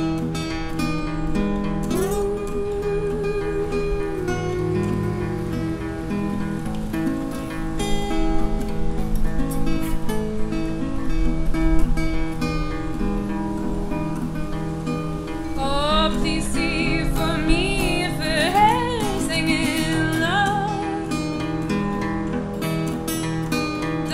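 Acoustic guitar with a capo playing a slow folk accompaniment, joined in places by a wordless female vocal line that wavers and glides. Wind buffets the microphone, loudest about halfway through.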